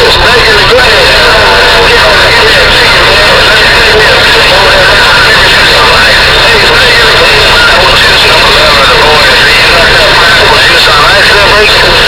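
CB radio speaker carrying a strong incoming signal: loud, garbled voices that cannot be made out, buried under steady static and whining tones.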